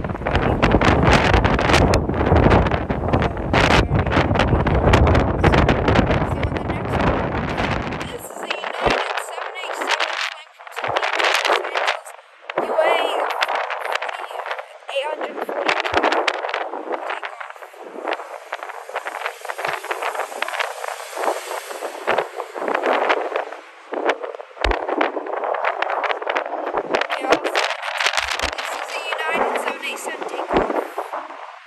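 Strong wind buffeting the microphone in gusts of about 40–50 km/h: a heavy, deep rumble for the first eight seconds or so, then the deep part cuts off suddenly and a thinner, gusty rushing noise carries on.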